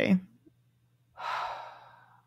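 A woman's speech trails off, then after a pause of about a second comes one audible breath of about half a second, a sigh, loudest at its start and fading out.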